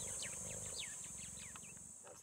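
Steady high-pitched insect drone with a run of short, falling bird chirps over it, the whole fading slowly toward the end.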